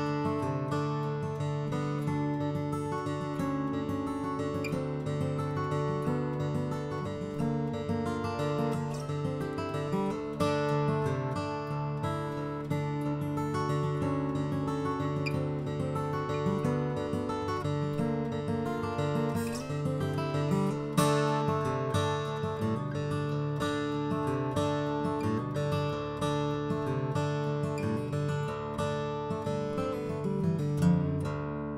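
Lakewood D-14 2018 Edition, a 12-fret dreadnought acoustic guitar with solid mahogany top, back and sides, played solo: a continuous passage of fretted chords and picked notes, with a couple of louder accents about two-thirds of the way through.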